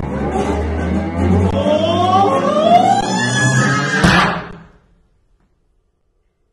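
Free-improvisation ensemble of bowed double bass and cello, with a low sustained drone under slow rising sliding pitches. A sharp attack comes about four seconds in, then the music dies away suddenly to silence.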